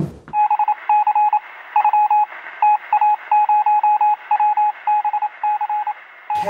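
Morse-code-style beeping used as a segment-transition sound effect: one high beep keyed on and off in a rapid, uneven run of short and long pulses over a steady hiss, with a thin, radio-like sound.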